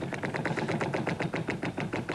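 Game-show prize wheel spinning, its pointer flapper striking the pegs on the rim in rapid, steady clicking.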